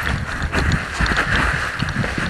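Mountain bike rattling and clattering over a rocky single-track trail: irregular knocks and jolts of the frame and components as the wheels hit rocks and roots.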